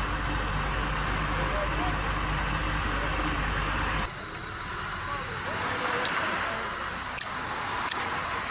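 Roadside noise: a steady rumble of vehicles on the highway and idling nearby, with faint voices of people talking. About halfway through it drops abruptly to a quieter hiss, with a few sharp clicks near the end.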